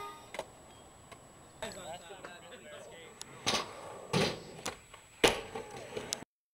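Faint live sound of skateboarding: a few sharp knocks of skateboard boards hitting pavement, with faint voices in the background, after music stops at the start.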